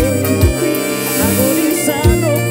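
A live band playing a romantic Latin dance number, with a melody over a steady bass-drum beat.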